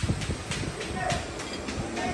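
A string of light clicks and clinks of tableware at a meal table, several a second, with voices in the background.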